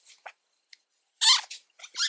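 Short scratchy rubs and squeaks of yarn dragging over a metal crochet hook as a single crochet stitch is worked, with one louder rub a little past the middle.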